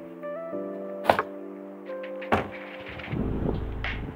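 Background music with held notes over two sharp knocks from plastic wheelie bins, about a second and two seconds in. A low rumble of wind on the microphone comes in near the end.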